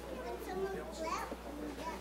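Indistinct chatter of several people talking at once, with a young child's voice among it.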